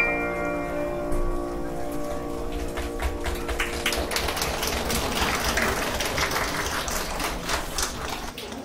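An upright piano's final chord rings out and fades over the first few seconds. From about three seconds in, a small audience claps.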